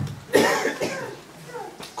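A person coughing once. The cough starts sharply about a third of a second in and trails off over about half a second.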